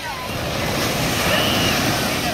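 Ocean surf: a wave breaking and washing up the beach, the rush of water building and loudest in the second half.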